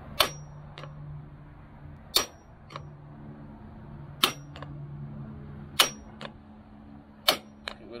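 A hammer striking a metal seal driver five times, about one and a half to two seconds apart, each blow followed by a lighter second tap and a short metallic ring. The blows are driving a new Mercruiser Bravo 3 prop shaft seal down into the outdrive's bearing carrier until it seats.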